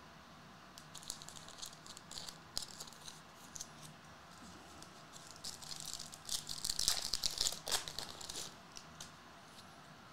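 Foil trading-card pack wrapper crinkling and tearing as it is peeled open, loudest about six to eight seconds in. Before it come a few light clicks and rustles of cards being handled.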